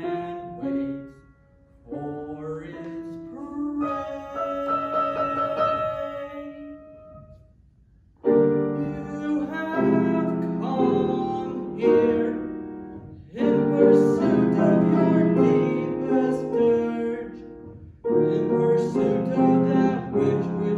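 Grand piano playing a dramatic accompaniment: lighter chords at first, then loud, full repeated chords from about eight seconds in.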